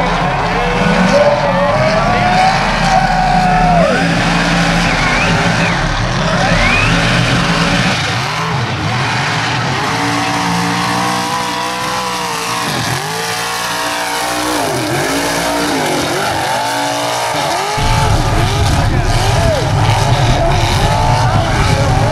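Mega truck engine at hard throttle, revving up and down again and again through the middle, with a heavy low rumble at the start and again near the end.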